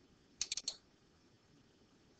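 A quick run of about four sharp computer clicks, about half a second in, advancing the slide animation.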